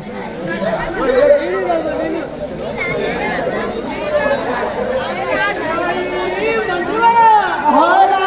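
Many people talking at once: loud, overlapping crowd chatter with several voices calling out, growing livelier in the second half.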